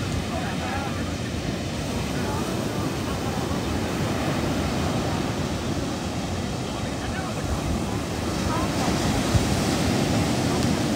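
Ocean surf breaking and washing up the sand, a steady rushing noise with wind buffeting the microphone.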